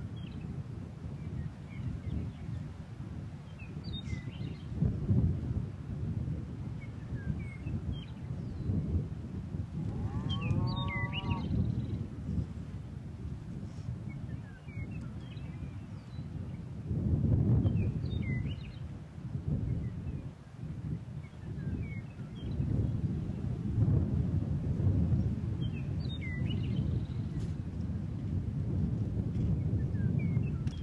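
Wind rumbling on the microphone in gusts, with short songbird chirps scattered throughout and one longer bird call about ten seconds in.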